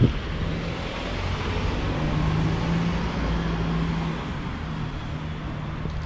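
A motor vehicle passing on the road: a steady engine hum over tyre noise that builds toward the middle and eases off toward the end. A single sharp knock comes right at the start.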